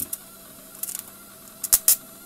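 Spark gap of a homemade induction-coil driver crackling in short bursts of sharp snaps, about a second in and louder near the end, over a faint steady electrical hum while the circuit draws around 200 watts.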